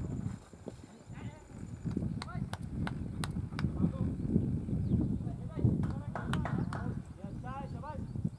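Distant voices over outdoor background rumble, with a few sharp clicks scattered through the middle.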